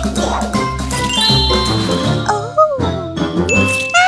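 Upbeat background music with cartoon-style sound effects laid over it: a bright, ringing chime a little over a second in and a few short sliding tones that rise and fall in the middle.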